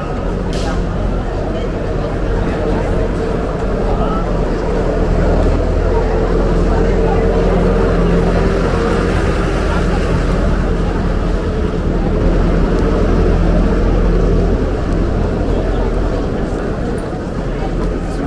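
Busy pedestrian street ambience: many passers-by talking and walking, over a steady low mechanical hum like an engine running that grows stronger in the middle.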